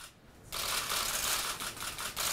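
Press-conference room noise: a brief hush, then from about half a second in a steady, dense rustling and clicking.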